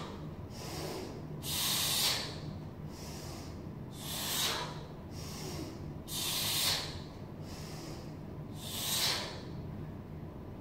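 A man's forceful, hissing exhalations during kettlebell reps, four sharp breaths about two and a half seconds apart, over a steady low hum.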